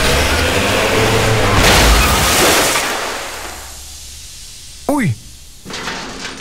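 A van crashing into a wall: a long, loud crash with crumbling and rattling debris, loudest about two seconds in, dying away over the next second or two.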